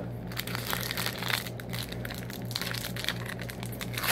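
Trading-card pack wrapper crinkling and crackling in irregular rustles as it is handled and worked open by hand, over a steady low hum.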